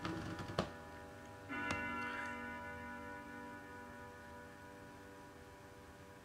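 Acoustic guitar's final chord ringing and slowly fading away, with a few light clicks in the first two seconds and a soft note plucked about a second and a half in.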